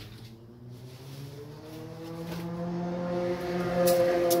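A steady motor drone that slowly rises in pitch and grows louder over the last three seconds. A few sharp clicks come near the end.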